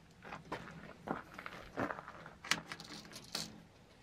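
Irregular clicks and rustles from a tape measure and a wooden axe handle being handled on a metal pickup truck bed, a few sharper clicks standing out about halfway through.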